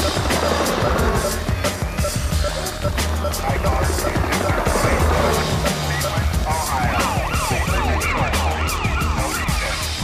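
Music with a steady beat. About two-thirds of the way in, a siren-like wail sweeps up and down quickly, about twice a second.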